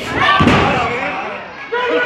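A wrestler's body landing hard after a flying move over the ropes: one heavy slam about half a second in, with crowd voices shouting around it.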